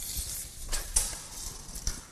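Steel tape measure being pulled out and worked along a wooden crate: irregular scraping and rattling with a few sharp clicks.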